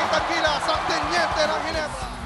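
Basketball shoes squeaking in short chirps on a hardwood court, with a ball bouncing and crowd noise behind.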